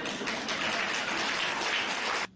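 Audience laughing and applauding: a dense, steady patter of clapping.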